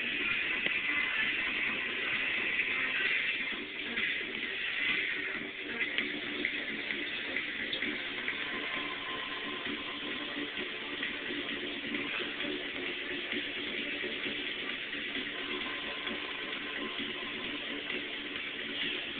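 Liquid pouring steadily from a glass jar through a plastic funnel into a bottle, with music playing in the background.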